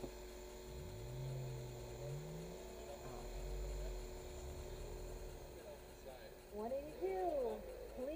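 A car engine accelerating away from an autocross start, its note rising in two steps, over the steady hum of an idling car heard from inside the cabin. A low rumble follows, then muffled talk near the end.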